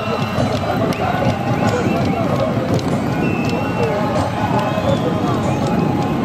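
Football stadium crowd: many voices singing and chanting at once, making a dense, unbroken wall of sound.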